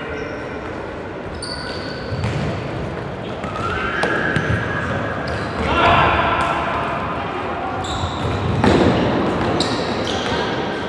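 Futsal players shouting to each other in an echoing sports hall, with the ball thudding off feet and the floor several times and short high squeaks of shoes on the court.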